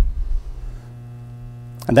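Seeburg jukebox mechanism cycling after a record cancel: a low thud at the start, then a low rumble for under a second, over a steady mains hum.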